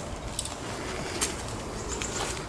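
A dove cooing faintly in the background, with two short sharp clicks about half a second and a second in.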